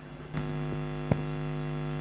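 Mains hum from a Shure PGX wireless microphone's signal chain: a steady electrical buzz of evenly spaced tones that cuts in suddenly shortly after the start as the mic's signal comes in. A single click follows about a second in.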